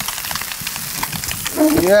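Fish steaks frying in hot oil in a pan: a steady crackling sizzle. A voice comes in near the end.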